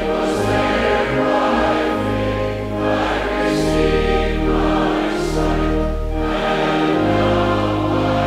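A congregation singing a hymn together over sustained instrumental accompaniment, the notes held long with steady bass tones beneath.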